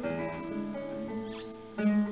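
Classical guitar played fingerstyle: plucked notes ring and fade, with a brief high squeak of fingers shifting on the strings about one and a half seconds in, then a loud chord struck near the end.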